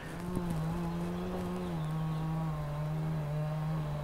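EGO Power+ HT6500E cordless hedge trimmer running free in the air, not cutting: a steady, fairly quiet hum that dips slightly in pitch a little under two seconds in.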